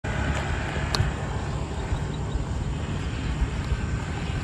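Outdoor ambience: a steady low rumble, with a faint click about a second in.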